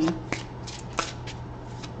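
A deck of tarot cards being shuffled and handled by hand: a few short crisp clicks, the loudest about a second in, over a steady low hum.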